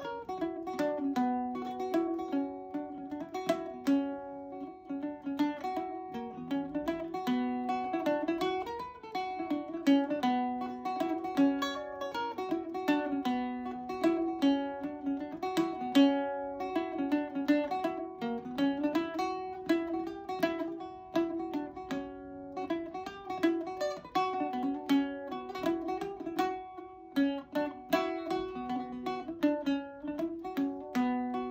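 A 1978 Joe Foley Irish bouzouki played solo: a quick reel melody of rapid plucked notes, played with a swing, over steady ringing drone notes.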